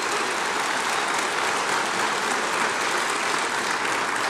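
A large seated audience applauding, a steady, even clapping that holds at one level.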